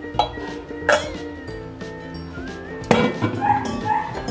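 A few light clinks of raw eggs against a small stainless steel pot and of the pot being set down on a freezer shelf, over light background music. Three sharp clinks, the loudest about three seconds in.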